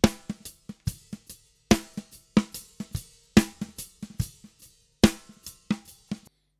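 Recorded drum kit played back, its snare track run through Cubase's EnvelopeShaper plug-in with the Length control turned up, so the snare's attack lasts a little longer. Loud drum hits come roughly every second, with lighter strokes between.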